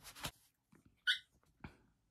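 Paper rustling faintly as an old paper envelope is handled, with one brief high-pitched squeak about a second in.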